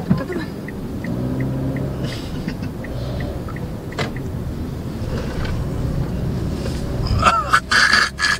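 Inside a moving car: a steady low rumble of engine and road noise. The turn-signal relay ticks about three times a second for the first two seconds or so, then stops.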